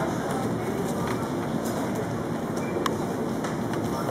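Steady low rumbling background noise of a supermarket aisle, with a few faint clicks.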